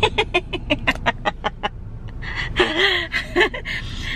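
A woman laughing: a quick run of short bursts, then a longer breathy laugh past the middle.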